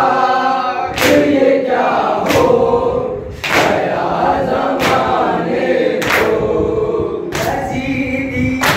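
Men's voices chanting a noha together in unison, with loud chest-beating matam: hands striking chests in time about once every second and a quarter.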